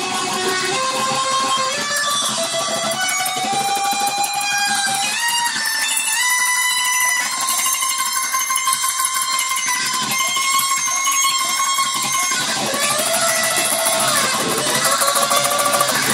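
Jazzmaster-style offset electric guitar strummed through an amplifier, chords ringing on with long sustained notes, some of them gliding up in pitch.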